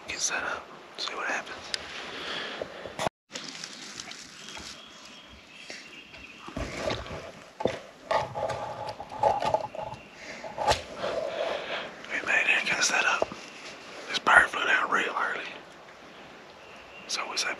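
Hushed, whispered voices in short, broken phrases.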